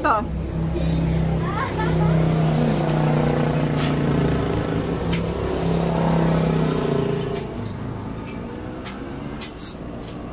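A vehicle engine running steadily nearby, then fading away about seven seconds in.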